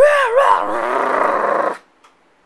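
A loud growling roar, like a monster's, that breaks in suddenly, wavers in pitch at first, then holds steady and stops short after almost two seconds.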